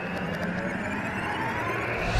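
Synthesized whoosh sound effect of an animated logo intro, a steady rushing swell over a low hum, slowly building in loudness.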